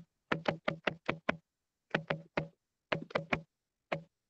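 Computer keyboard typing: sharp key clicks in short quick runs of about five a second, separated by brief pauses.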